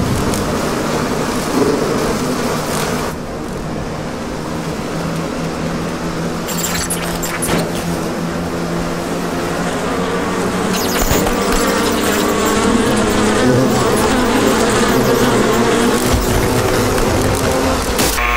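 Loud, dense buzzing of a huge swarm of bees, many wingbeat tones merging into one steady drone. It dips a little about three seconds in and grows louder toward the end.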